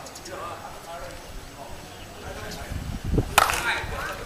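Softball bat striking the ball: a single sharp crack about three and a half seconds in, the loudest sound here, with faint voices around it.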